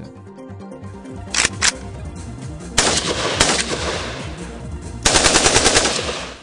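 Short-barrelled Kalashnikov assault rifle firing. Two quick shots come first, then louder shots near the middle with a long echoing tail, and near the end a rapid fully automatic burst of about ten rounds in a second.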